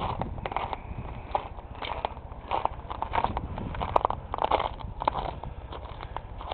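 Footsteps on frozen snow and ice, about two steps a second.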